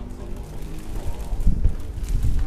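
Wind buffeting the microphone in an uneven low rumble, with faint steady pitched tones behind it in the first second.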